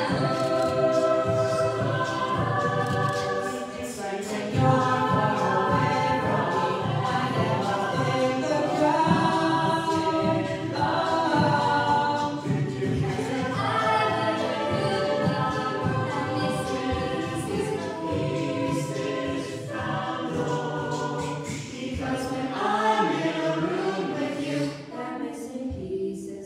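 Mixed-voice a cappella group singing a pop song arrangement, with solo voices on handheld microphones over the group's sung backing harmonies. The song draws to a close near the end.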